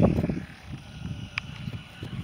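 Wind buffeting the camera microphone, with handling noise as the camera swings: a loud, low, uneven rumble in the first half-second, then lighter gusts. A short high chirp sounds once, about one and a half seconds in.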